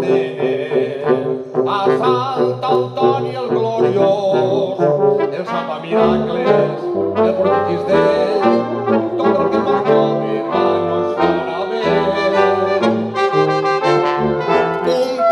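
A brass quintet of trumpets, horn, trombone and tuba plays a chamber arrangement of a Valencian folk song. A low bass line of separate notes comes in about six seconds in.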